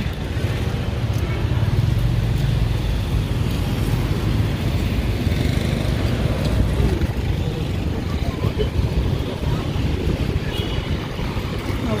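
Motorcycle engine of a Philippine tricycle (motorbike with sidecar) running with a steady low rumble as it rides slowly through town traffic.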